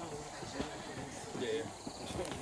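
Footsteps of several people walking on a stone path, with faint voices of the group murmuring.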